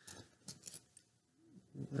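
A few faint, sharp clicks and light rustles in the first second: the small metal scissors and needle being handled during doll hair rerooting. A brief low hum of voice follows near the end.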